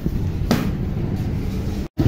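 A bicycle being handled and wheeled along, a low rumbling with a sharp knock about half a second in. The sound drops out abruptly near the end.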